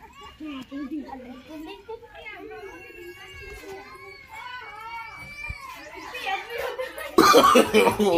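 Children's voices at play: chatter and calls at a moderate level, then a much louder voice close by starting near the end.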